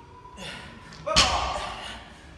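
Barbell loaded with rubber bumper plates set down hard on a rubber gym floor between deadlift reps: one heavy thud about a second in that rings on briefly.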